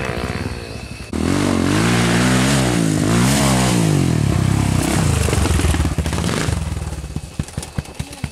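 Enduro dirt bike engines revving hard on a trail, the pitch climbing and dropping repeatedly as the riders work the throttle and shift. The sound jumps louder about a second in, holds until past the middle, then fades near the end.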